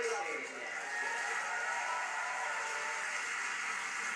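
Indistinct voices from a TV talk show, heard through the television's speaker and picked up by a phone in the room.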